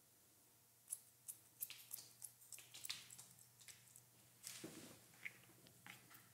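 Haircutting scissors snipping through a section of hair held between the fingers: a run of faint, quick snips spread over a few seconds, with a few more near the end.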